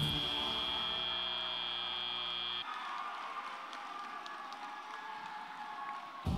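FIRST Robotics Competition end-of-match buzzer: a steady electronic tone that cuts off suddenly about two and a half seconds in, then crowd noise with applause in the arena.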